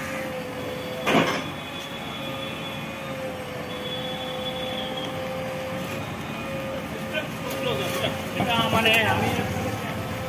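JCB 3DX backhoe loader running while it works its backhoe arm on a garbage heap, with a steady whine over the engine and a loud clank about a second in. A voice is heard briefly near the end.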